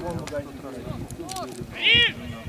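Footballers' short shouted calls during play, the loudest a high-pitched yell near the end.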